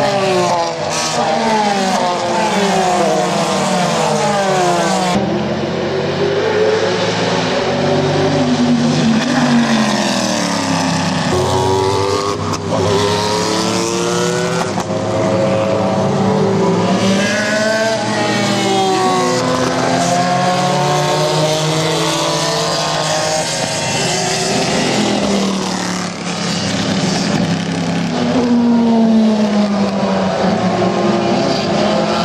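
Race car engines, several cars passing one after another at full speed. The engine notes repeatedly rise and fall in pitch, with no let-up between cars.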